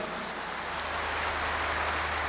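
Audience applause in a large hall, an even patter that builds slightly, over a steady low hum from the PA system.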